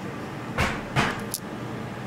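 A person puffing on a tobacco pipe: two short breathy puffs about half a second apart, then a small click, over a faint steady low hum.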